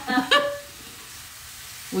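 A short laugh, then the steady sizzling hiss of food frying in a pan.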